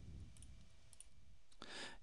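Faint computer mouse clicks, twice, about half a second apart, from the mouse clicking a dialog's Cancel button. Near the end comes a short, louder breath.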